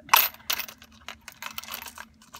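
Small metal embellishments (charms and metal tags) clinking and rattling in a plastic compartment organizer as a hand sifts through them. A sharp clink comes just after the start, another about half a second in, then a string of lighter clicks.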